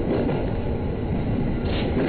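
JR East 209-series electric train running, heard from inside just behind the driver's cab: a steady rumble of wheels on rail, with a brief higher rushing sound near the end.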